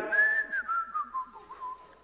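A man whistling a short tune that steps down in pitch and fades away: a mimed carefree, nothing-to-see-here whistle.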